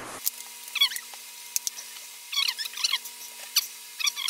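Plastic laptop bottom cover being pressed shut onto its clips: short squeaks that slide down in pitch, about a second in, a cluster between two and three seconds and again near the end, with a few sharp clicks.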